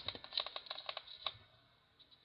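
A quick, irregular run of light clicks and taps in the first second or so.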